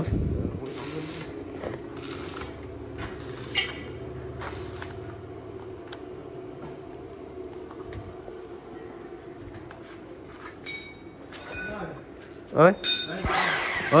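A steady mechanical hum with scattered light metallic clinks of tools being handled.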